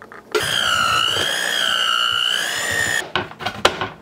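Electric hand mixer running in cookie dough, a high motor whine that wavers slightly in pitch for under three seconds and then cuts off, followed by several sharp knocks.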